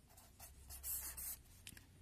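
Felt-tip pen writing on paper: faint scratching strokes, loudest about a second in, then a few short strokes near the end.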